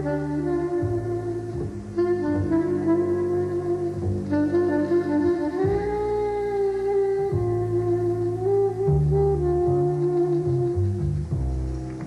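Blues music: a slow lead melody of long held notes over a stepping bass line.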